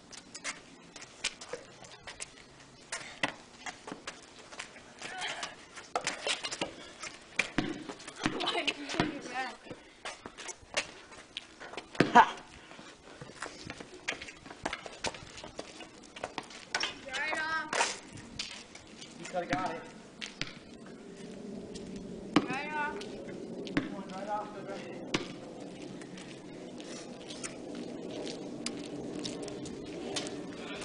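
A basketball bouncing and knocking on a concrete driveway in irregular hits, the loudest about twelve seconds in, with brief voices between about seventeen and twenty-five seconds and a steady low noise from about twenty seconds on.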